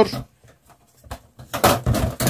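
A man speaking Turkish, with a pause of about a second in the middle.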